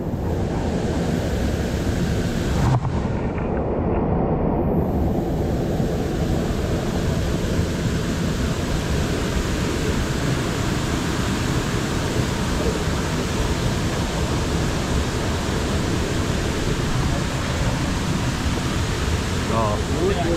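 Stream water rushing over rock right beside the camera, a steady loud hiss with a deep rumble, growing brighter about five seconds in. A single short knock about three seconds in.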